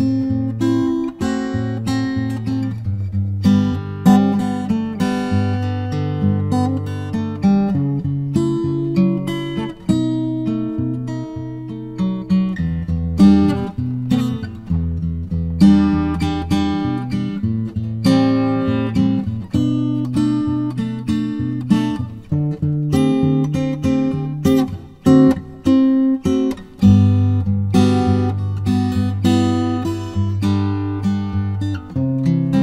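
Acoustic guitar played solo, a continuous flow of chords and single picked notes over a changing bass line, close-miked with a stereo microphone pair.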